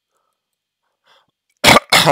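A man coughing twice in quick succession, loud and sharp, about a second and a half in after a silent pause.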